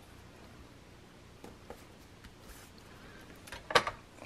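Quiet room tone with faint paper and hand handling on a tabletop: a couple of soft ticks about a second and a half in, and one short sharp click near the end.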